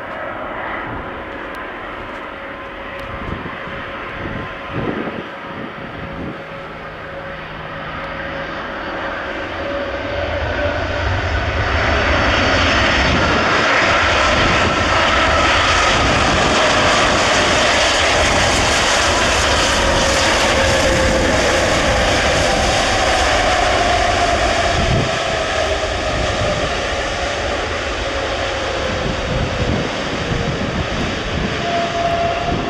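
Airbus Beluga XL's twin Rolls-Royce Trent 700 turbofans as it touches down and rolls out. The engine noise swells to loud from about ten seconds in, with whining tones gliding down in pitch, and eases a little near the end.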